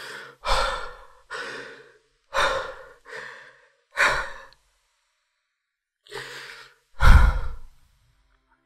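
A person breathing heavily and sighing close to the microphone: about eight short, uneven breaths in and out, a pause of about a second and a half in the middle, and the loudest sigh near the end.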